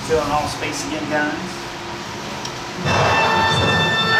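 Dark-ride show audio: a voice in the first second or so, then, near three seconds in, a sudden loud swell of the ride's soundtrack music with sustained, ringing bell-like tones.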